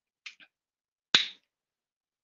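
Plastic squeeze bottle of black gesso being handled: a couple of faint clicks, then one sharp snap about a second in.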